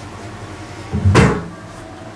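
A single knock with a dull low thud about a second in, as a metal tray holding burnt paper ash is picked up off a desk.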